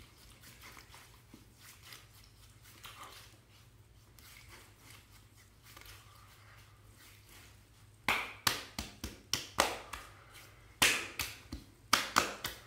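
Hands faintly rubbing aftershave balm over the face, then from about eight seconds in a quick run of about a dozen sharp slaps of the palms against the face.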